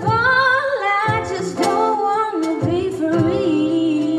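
Live song: voices singing in harmony over an acoustic guitar and a steady percussion beat.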